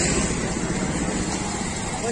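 Steady outdoor background noise: a low rumble with a hiss over it, easing slightly toward the end.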